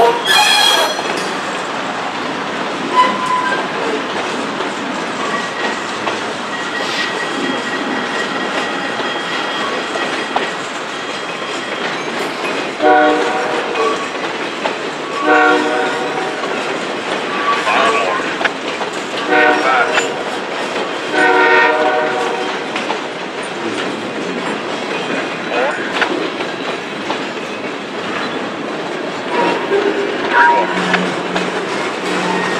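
Freight cars rolling past, wheels clicking over the rail joints with a thin steady wheel squeal. Midway, a locomotive horn sounds a string of about five short blasts.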